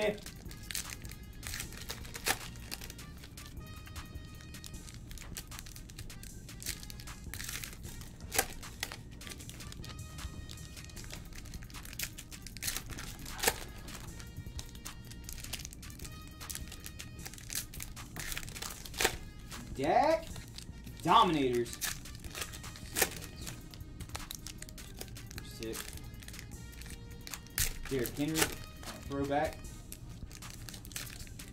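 Foil trading-card pack wrappers being torn open and crinkled, with cards shuffled by hand, as a run of short sharp crackles. Quiet background music plays underneath, and a voice is heard briefly about twenty seconds in and again near the end.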